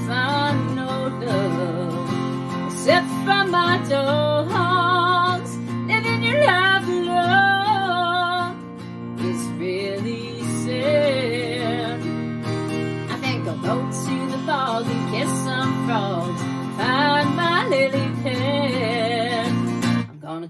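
A woman singing a melody with vibrato over a strummed acoustic guitar.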